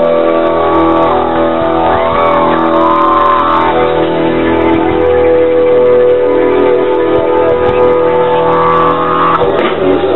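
Live rock band holding a long sustained chord, the notes ringing steadily, with a few short sliding notes over it about two to five seconds in.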